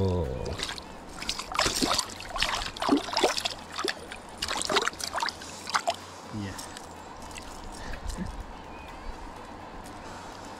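Water splashing and sloshing in a series of short strokes as a freshly caught trout is handled at the surface of a shallow river, over the steady sound of running water. The splashing stops about six seconds in, leaving only the flowing water.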